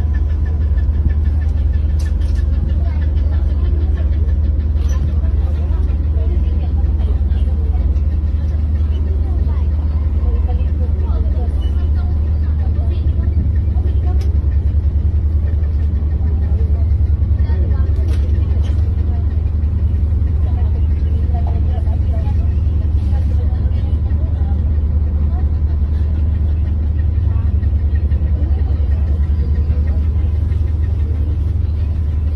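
Passenger ferry's engines running underway, a loud, steady low drone that holds unchanged.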